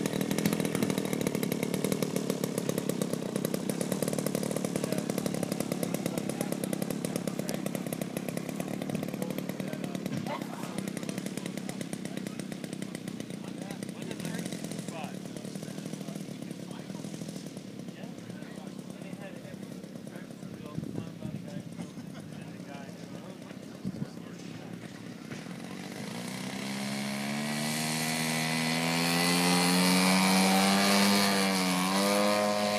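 Gasoline two-stroke engine and propeller of a radio-controlled Pitts Special model biplane running steadily. It fades as the plane moves away down the runway, then grows louder with a rising pitch over the last few seconds as it comes back toward the listener.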